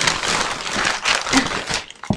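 Brown paper packing crumpling and rustling as it is pulled out of a cardboard box, dense and continuous before easing off just before the end.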